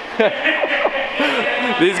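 Men talking and laughing, with a brief laugh near the end.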